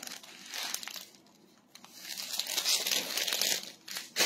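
Clear plastic packaging bags crinkling as packed dresses are handled, in irregular bursts, with the longest and loudest stretch in the second half.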